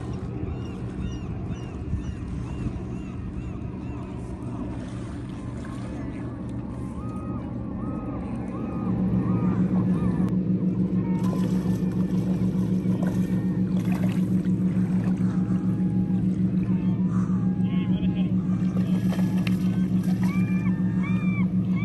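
Many short, arched bird calls over a steady motor hum. The hum gets louder about nine seconds in and then throbs evenly.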